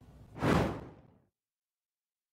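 A single short whoosh sound effect about half a second in, fading out quickly.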